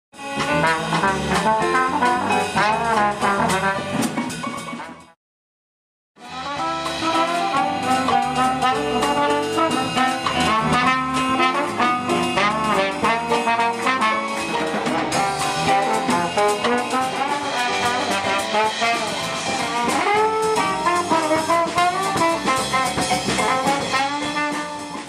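A small jazz group playing, a brass horn carrying the melody over drums and cymbals. The music cuts out completely for about a second a little after five seconds in, then starts again.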